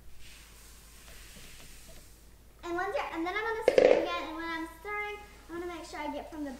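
Dry puffed rice cereal poured from a plastic bowl into a pot, a faint, soft rustling hiss for the first two and a half seconds. Then a child talks, with one sharp knock a little under four seconds in.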